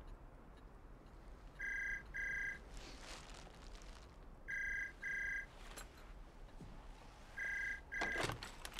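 Telephone with an electronic ringer ringing in the British double-ring pattern: three pairs of short, high, steady rings about three seconds apart. The handset is lifted off its cradle with a clatter right at the end.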